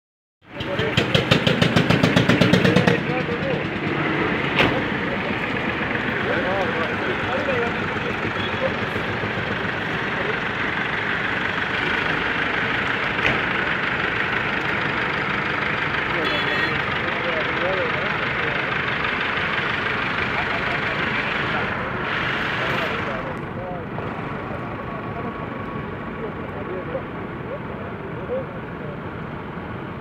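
Several tractor engines running as a line of tractors pulls away, with a loud, fast pulsing engine beat close by for the first few seconds, then a steady mixed engine noise that eases off a little near the end. Voices chatter underneath.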